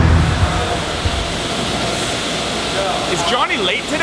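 Steady rushing noise of woodshop machinery and dust-collection blowers running.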